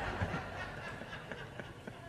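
Laughter dying away, with a hushed, fading murmur.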